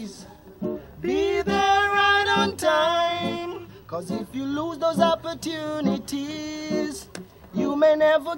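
A young man singing a reggae song in long held notes to his own acoustic guitar. The singing drops away briefly in the first second and again near the end, with the guitar carrying on.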